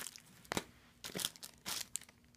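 Sticker packs in clear plastic sleeves crinkling as they are handled, in a few short rustles with a sharp tap about half a second in.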